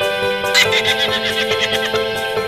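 Background music with held chords. About half a second in, a comic sound effect is laid over it: a high, quavering, whinny-like cry that falls away over about a second and a half.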